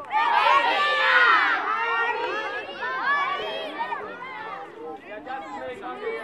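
A crowd of children shouting and talking at once, loudest in the first couple of seconds, then settling into steady chatter.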